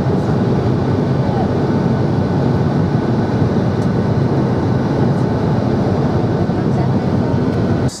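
Steady engine and airflow noise heard from inside an airliner cabin in flight, an even, low-heavy rumble with no rhythm.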